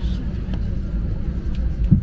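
Steady low rumble inside an airliner cabin waiting to take off, with a short low sound near the end.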